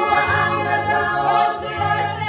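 Women's church choir singing a Swahili gospel song together, several voices holding and moving between sustained notes.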